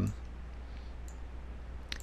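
A computer mouse clicking faintly once or twice over a steady low electrical hum.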